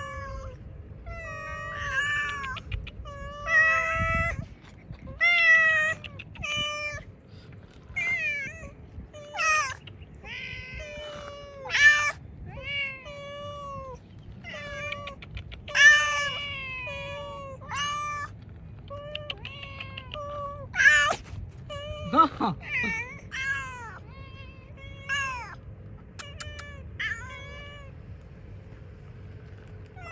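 Hungry stray cats begging for food, meowing over and over, about one meow every second or two. About two-thirds of the way through comes one longer meow that drops low.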